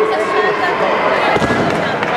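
A thrown body landing on the competition mat with a thud about one and a half seconds in, during a ju-jitsu throw, over steady chatter of voices in a large hall.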